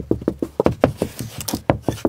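Knuckles rapping on a closet wall in a quick, uneven series of knocks, several a second. The wall sounds hollow.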